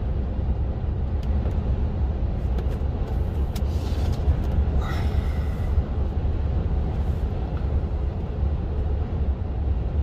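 Steady low rumble of a truck's engine and tyres heard from inside the cab while cruising on a motorway.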